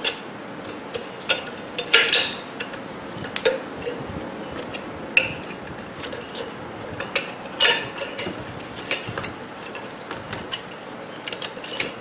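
Metal parts of a microwave oven magnetron clinking and knocking as it is pulled apart by hand: scattered sharp clicks, with louder clanks about two seconds in and again past the middle.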